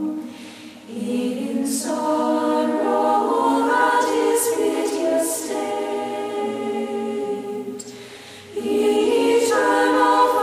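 A choir of women's voices, the nuns, singing a slow hymn in sustained phrases. The singing thins briefly between phrases about a second in and again around eight seconds in, then the voices come back in together.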